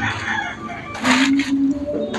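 Harsh, noisy bird calls, with the loudest burst about a second in, over a low droning tone that comes and goes.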